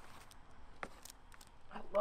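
Faint handling noise of a pump shotgun being slung over the shoulder, with a couple of small clicks about a second in. A man's voice starts at the very end.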